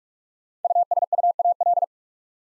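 Morse code sent as a single-pitch keyed tone at 45 words per minute, spelling the word "USUAL" in one burst of rapid dots and dashes about a second long, starting just over half a second in.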